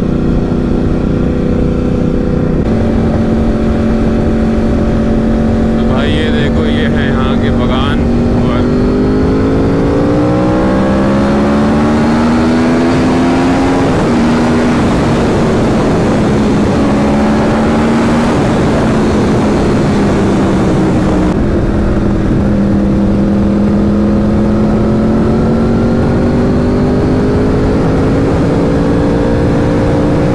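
Sport motorcycle engine under way at a steady cruise, its pitch climbing as the bike accelerates from about a quarter of the way in, dropping suddenly at an upshift about halfway, then holding steady and rising slowly again near the end. Wind rushes over the microphone throughout.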